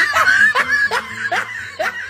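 A person snickering in a string of short, rising bursts, about two a second.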